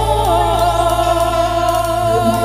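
Live Nagpuri folk song: a male singer sings a wavering, ornamented line through the stage microphone for about the first second. Under it, a steady accompaniment holds one note over a constant low drone.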